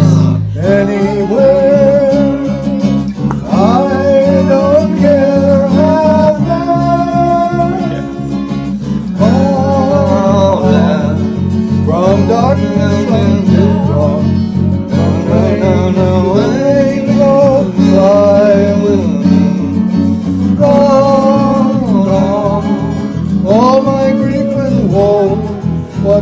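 Band playing a country-rock song: electric bass holding steady notes under strummed guitars, with a lead melody of scooping, gliding notes over the top.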